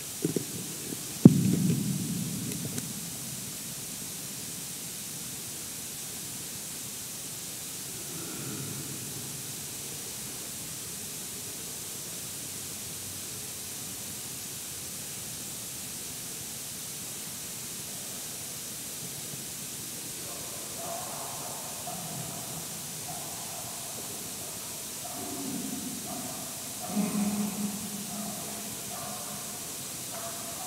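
Steady hiss of background noise in a reverberant church, with a sharp knock about a second in that rings on briefly. Faint, short pitched tones and a low murmur come and go in the last third.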